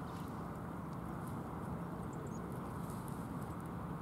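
Steady outdoor background rush with a faint low hum, with a few faint small ticks and short high chirps over it.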